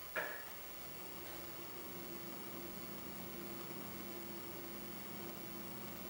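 Quiet room tone: a steady faint hum with a low tone and a soft hiss, after a brief sound right at the start.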